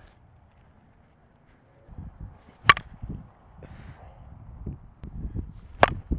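Two sharp cracks of a 2023 Easton POP one-piece composite slowpitch softball bat hitting softballs, about three seconds apart, one near the middle and one near the end.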